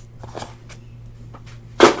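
A 2017 Panini Immaculate Baseball hobby box being picked up off the table: a faint rustle about a quarter of a second in, then a short, loud knock of the box near the end. A steady low hum runs underneath.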